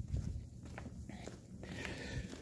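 Soft footsteps on a concrete floor: a few faint low thuds with light clicks and handling noise from the hand-held camera being carried.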